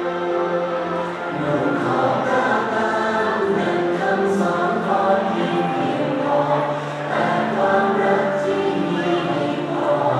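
A slow song sung by a choir with musical accompaniment, in long held notes.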